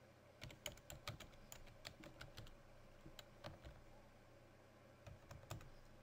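Faint computer keyboard typing: a quick run of key clicks for the first few seconds, then a few more near the end.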